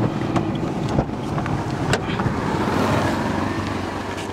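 A car engine running steadily at idle, with wind noise on the microphone and a few sharp clicks in the first two seconds.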